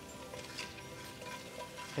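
Soft background music with steady held notes, over faint sizzling of chopped red onion being stirred with a wooden spoon in hot oil in an enamelled pan.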